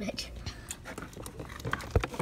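Handling noise of a plastic action figure being pushed into the seat of a plastic toy car: scattered light clicks and scrapes, with a sharper click near the end.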